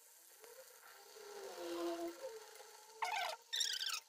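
Neyyappam batter frying in hot oil in a metal kadai, faintly sizzling. About three seconds in, two short, loud, high-pitched sounds cut in.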